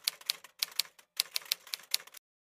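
Typewriter key-strike sound effect: quick sharp clacks, about six a second, with two brief pauses.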